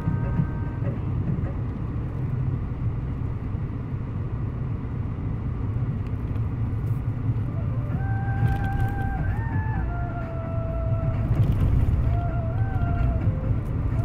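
Steady engine and road rumble heard inside the cabin of a moving Mahindra Bolero. About eight seconds in, a tune from music playing comes in over it.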